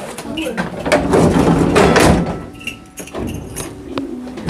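Historic tram's wooden passenger door pulled shut by hand, sliding with a rumble and knocking into place, with voices around it.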